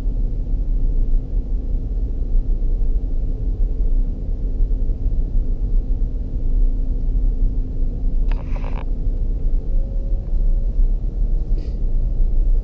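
Land Rover Discovery 3 driving along a sand beach, heard from inside the cabin as a steady low rumble with a faint steady drone. A brief sharp noise cuts in about eight seconds in, and a fainter one just before the end.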